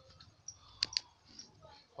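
Two sharp clicks close together, about a second in, from typing digits on a tablet's on-screen keyboard.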